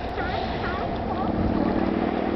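Sea lions barking in a chorus of short, quickly repeated calls, joined about a second in by a steady low drone.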